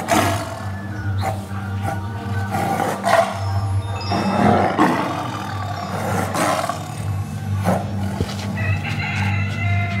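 A lion roaring and growling in several rough bursts, over background music.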